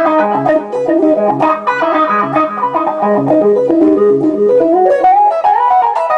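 Clean electric guitar played through a GLAB Wowee Wah pedal, set with the bass switch low and the deep and Q-factor switches high. It picks a fast, repeating arpeggio over pulsing low notes, and about five seconds in the line climbs higher as the low notes drop out.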